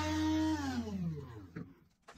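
Table saw motor running, then switched off about half a second in, its whine falling steadily in pitch and fading as the blade coasts down.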